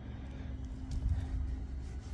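Quiet background: a low, even rumble with a faint steady hum, and no distinct event.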